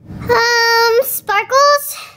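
A young girl's high voice holds one long, steady wordless note, then sings two short gliding notes.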